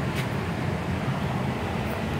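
Steady low hum with an even rush of air from a running oil furnace and its air handler.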